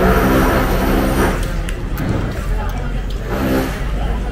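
A motor revving loudly in two bursts. The first lasts about a second at the start, and a shorter one comes near the end.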